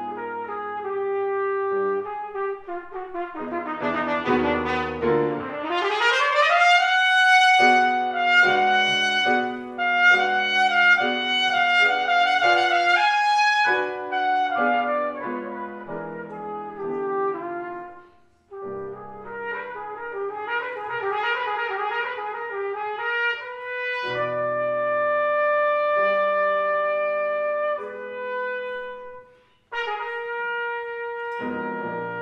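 Solo trumpet playing with grand piano accompaniment. About five seconds in, the trumpet sweeps quickly upward into a loud, high held passage. The music breaks off suddenly about two-thirds of the way through and again just before the end, each time resuming on a new passage.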